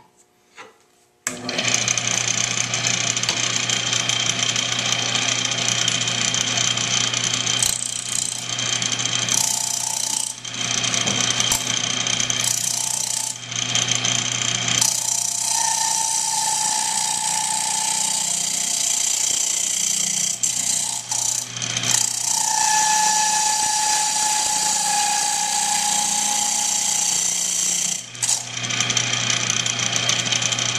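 Wood lathe running with a steel scraper hollowing the inside of a spinning walnut burl cup: a steady motor hum under the rasping hiss of the cutting, starting abruptly about a second in. Twice in the middle a high steady whine rides on top for a few seconds.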